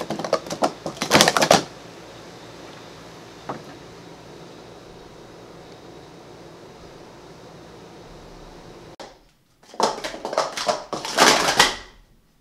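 Hard plastic sport-stacking cups clicking and clattering against each other and the mat during a fast timed stack: a quick run of clicks in the first second and a half, then a single click about three and a half seconds in. After a stretch of steady hiss, a second rapid run of cup clatter comes about ten seconds in and runs almost to the end.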